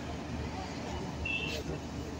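Outdoor roadside ambience: a steady low rumble of vehicle traffic with faint voices of a crowd, and a brief high tone about a second and a half in.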